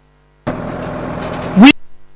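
A low mains hum, then about half a second in a steady rushing noise starts, as from the field sound of a fire being hosed down. Near the end a woman's voice starts a word and the sound cuts off abruptly, as at a glitch in playout.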